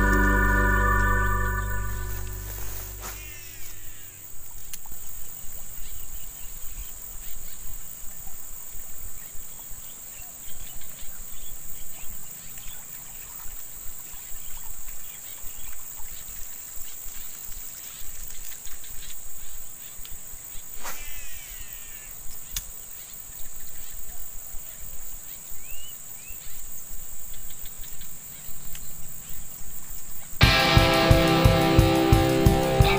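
Background organ music fades out over the first three seconds. Insects then keep up a steady high buzz, over an irregular low rumble, with a couple of brief higher chirps.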